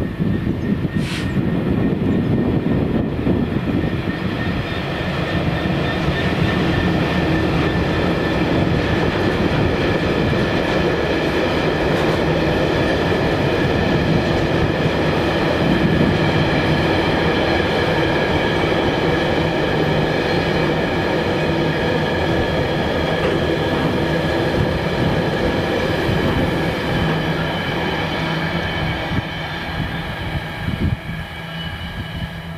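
Freight train rolling past, with a steady rumble of wagons on the rails and a high steady ringing over it. There is a short sharp squeal about a second in.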